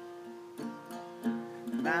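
Recording King acoustic guitar played between sung lines, its notes ringing and fading with a fresh stroke about every half second. A man's singing voice comes in just before the end.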